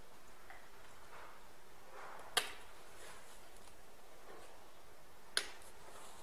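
Two short sharp taps against a small saucepan, about three seconds apart, as caster sugar is added to melted chocolate and butter, with faint soft rustling of the sugar going in before the first tap.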